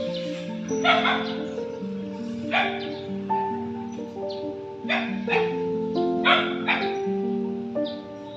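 A dog barking about six times, singly and in pairs, over steady background music.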